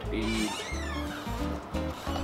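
Background music playing in the room, with a pulsing bass line and a wavering high sound about halfway through.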